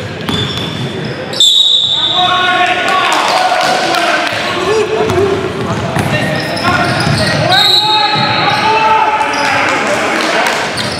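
Basketball game sounds in a large gym: a ball bouncing on the hardwood floor and players' voices calling out, echoing in the hall. The sound jumps suddenly louder about a second and a half in.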